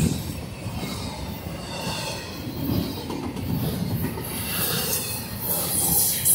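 Freight train cars rolling past close by at speed: a steady rumble of steel wheels on the rails, with a faint high wheel squeal in the middle and a few sharp clacks near the end.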